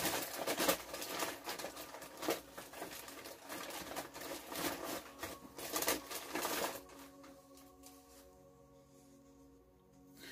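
Dry white sage smudge bundle handled and crumpled by hand, a crackling, crinkling rustle of dry leaves and twigs that lasts about seven seconds and then stops, leaving only faint background music.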